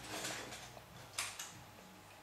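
Light plastic clicking and rattling from a LEGO AT-TE model (set 75019) being handled and turned, with two sharper clicks about a second and a quarter in.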